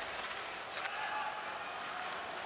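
Ice hockey arena crowd noise, steady, with a few sharp clicks of sticks and skates on the ice as play restarts from a faceoff.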